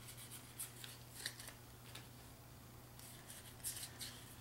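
Playing cards handled and laid down on piles on a game mat: faint, short rustles and light taps of card stock, a few in the first second and a quicker run of them near the end, over a low steady hum.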